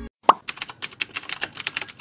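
A single sharp pop, then a rapid run of keyboard-typing clicks: a typing sound effect for text being typed out on screen.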